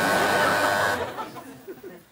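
Game-show buzzer giving a steady electric buzz that cuts off about a second in, signalling the switch from one team to the other; faint audience murmur follows.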